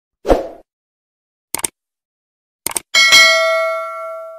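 Subscribe-button animation sound effects: a short thump, two quick double clicks, then a bell ding that rings on for over a second and fades.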